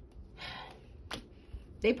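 A woman's audible intake of breath, then a single light tap a little over a second in as a tarot card is laid down on the table. Her speech resumes just before the end.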